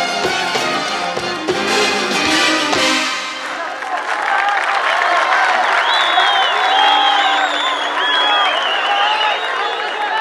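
A live orchestra with brass plays the final bars of a song, stopping about three seconds in. An audience then applauds and cheers.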